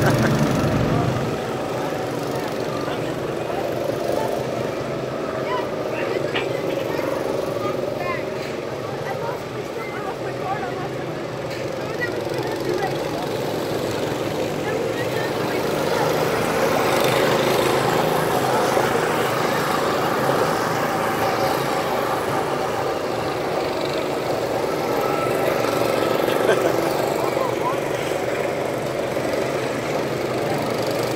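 Several go-kart engines running as the karts lap the track, a steady engine drone that grows a little louder in the second half as karts pass close by.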